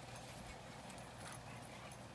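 Faint scuffling and soft footfalls of bully dogs playing on grass and dirt, with a few light ticks.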